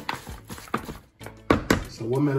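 Raw chicken wings tossed by hand in a plastic bowl: a few irregular wet slaps and knocks against the bowl, the loudest two close together near the end.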